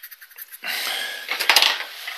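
Metal scraping and rubbing as a gouge held in a sharpening jig is handled against the belt sharpener to check the grinding angle. It starts about half a second in, with a sharp clack about midway.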